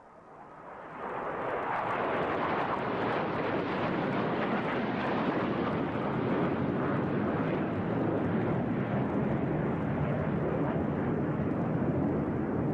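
Jet aircraft in flight: a steady rushing jet-engine noise that swells in over the first second or two and then holds level.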